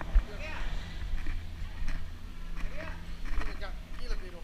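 People's voices talking at a distance from the camera, over a steady low rumble from a handheld camera being carried while walking, with a few scattered clicks.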